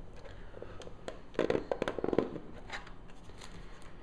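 Hand-handling noise on a work table: a quick cluster of small clicks and rustles about a second and a half in, lasting under a second, then a few scattered light ticks.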